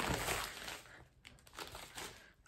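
Paper packet crinkling as it is handled, fading within the first second, then a couple of faint brief rustles.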